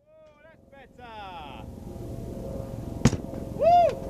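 Voices exclaiming as the ejector seat flies, then one sharp thud about three seconds in as the airbag-launched ejector-seat test rig comes down on the ground, followed by a short whoop.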